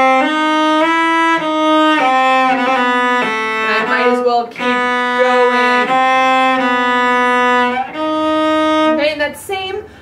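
Cello bowed in a slow practice phrase: a string of sustained notes, most held for about a second, with a few quick short notes around four seconds in. The playing stops about nine seconds in.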